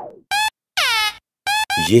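Horn-like comic sound effect: short steady honks alternating with honks that slide steeply down in pitch, each blast separated by dead silence.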